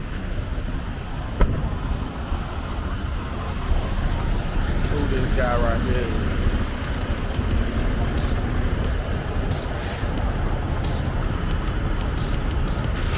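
Steady low rumble of idling diesel semi trucks across a truck stop lot. A single sharp knock about a second and a half in is the loudest moment.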